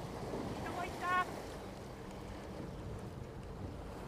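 Steady wind and sea noise on an open boat at sea, with wind buffeting the microphone. A brief high call sounds once about a second in.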